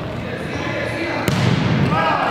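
A futsal ball struck hard once, a sharp thud a little past halfway, amid players' shouts echoing in a large sports hall.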